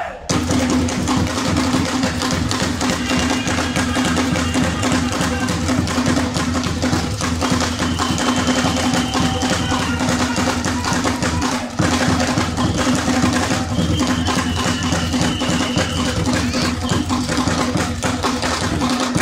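Traditional Mozambican drumming: tall wooden drums struck with sticks in a fast, dense, unbroken rhythm, with voices over it.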